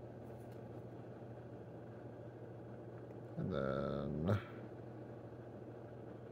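Steady low hum of room tone, broken about three and a half seconds in by a brief pitched, voice-like sound lasting about a second and ending in a short click.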